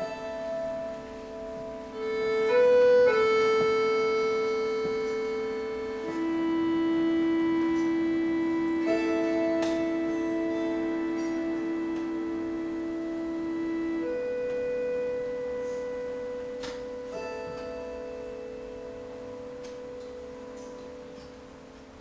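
Russian folk-instrument orchestra playing slow, sustained chords that change only a few times, swelling about two seconds in and then slowly fading away.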